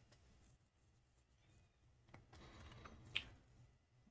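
Near silence, with a couple of faint clicks, the clearer one about three seconds in.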